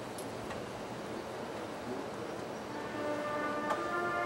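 High school marching band at a soft moment in its show: the stadium is left with the fading tail of a loud brass chord and a few faint clicks, then soft held wind and brass tones enter about three seconds in and begin to swell.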